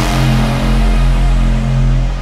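Hardstyle music in a breakdown: a deep synth chord and bass held steadily with no drums, its bright top slowly fading.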